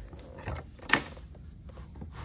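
Carpeted live-well hatch lid on a fiberglass bass boat deck being unlatched and lifted open: a soft knock about half a second in, then a sharp click about a second in.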